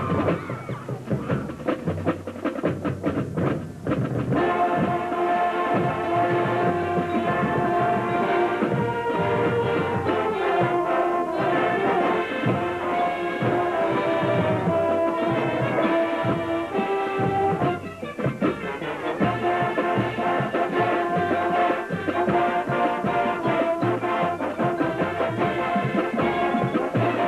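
High school marching band playing: for about four seconds mostly the drums, then the brass comes in with sustained chords over the percussion. The band eases off briefly about 18 seconds in, then plays on.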